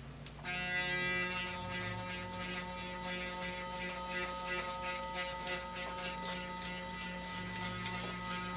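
Clarisonic Mia 2 sonic facial cleansing brush switching on about half a second in and running with a steady electric hum while held against the forehead.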